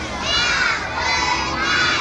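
A crowd of young schoolchildren shouting and calling out at once, many high-pitched voices overlapping.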